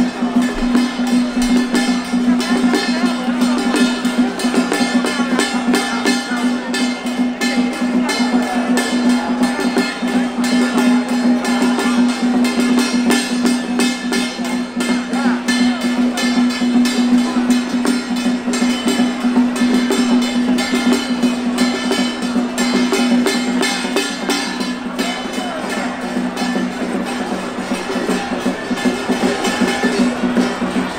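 Loud traditional temple-procession music with drums and percussion, over a steady held low tone, running without a break.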